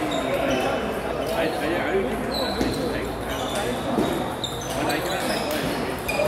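Celluloid-style plastic table tennis balls clicking off paddles and tables in irregular rallies, with short high pings, under a steady murmur of voices echoing in a large hall.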